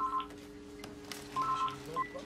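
Mobile phone ringing: pairs of short two-tone electronic beeps, a new pair coming about a second and a half after the last one.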